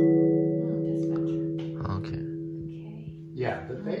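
Array mbira: a last chord of several plucked notes rings on and slowly dies away.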